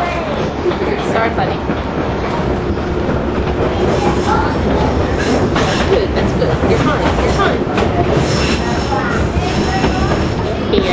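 Electric trolley car running along its track, heard from inside the car: a steady rumble of wheels on rail with a few clacks from the rail joints around the middle.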